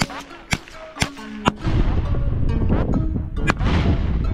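Four rifle shots from an AR-style rifle, about half a second apart in quick succession, over background music that becomes louder and fuller right after the last shot.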